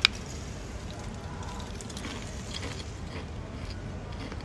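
Biting into a crunchy ridged potato chip: one sharp crack at the start, then chewing it with faint, irregular crisp crackles.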